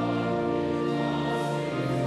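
Voices singing a hymn together in held chords with instrumental accompaniment, moving to new notes about every second.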